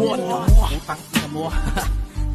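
Filipino hip-hop diss track: rapping in Tagalog over a beat with deep bass hits.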